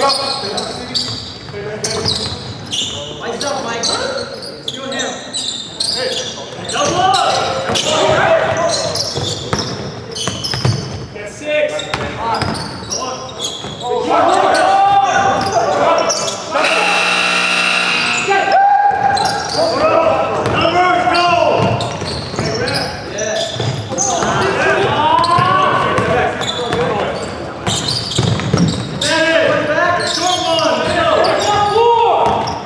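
Basketball game in an echoing gym: a ball bouncing on the hardwood court and players calling and shouting. A loud buzzer sounds for about two seconds just past the middle.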